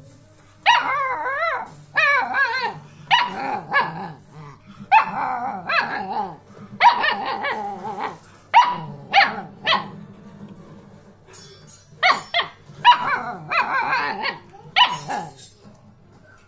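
Two-month-old Alaskan Malamute puppy 'talking': a run of about a dozen short whining, grumbling calls with a wavering pitch that bends up and down. There is a pause of about two seconds before a last group of calls.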